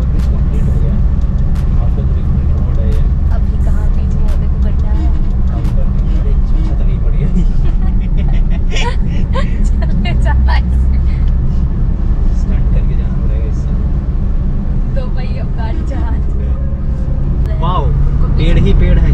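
Car interior noise while driving: a steady low rumble of road and engine, with scattered small knocks from the road surface and indistinct voices now and then.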